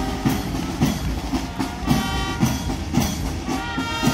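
Marching band music accompanying a parade march: a steady drum beat about three times a second under held wind-instrument notes.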